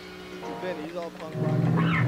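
Transition into a hardcore punk track: a short lull, a brief wavering pitched sound, then distorted guitar and bass come in loud about a second and a half in.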